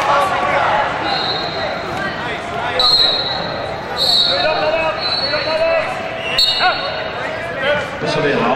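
Referees' whistles in a large hall: several short, steady, high blasts, the loudest about four seconds in, over continuous shouting from coaches and spectators around the wrestling mats.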